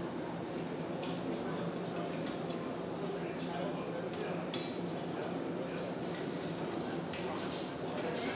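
Steady roar of a glassblowing hot shop, the gas-fired glory hole and ventilation running, as a piece on a blowpipe is reheated in the glory hole. A few light metallic clinks sound now and then, about midway and again near the end.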